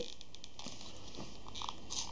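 Folded thin card crackling and rustling faintly with small scattered crinkles as it is held and slowly eased apart in the fingers.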